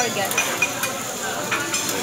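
Fried rice sizzling on a steel teppanyaki griddle while two metal spatulas scrape, chop and toss it, with sharp clicks each time a spatula hits the hot plate.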